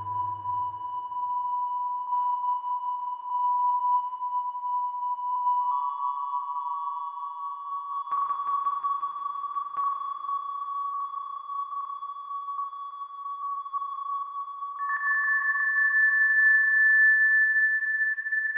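Doepfer A-100 Eurorack modular synthesizer patch, run through a Make Noise Mimeophon, holding high, pure-sounding electronic tones: one steady tone is joined by a second, slightly higher tone about six seconds in, and a clearly higher tone enters about fifteen seconds in and gets louder. A low note dies away in the first second.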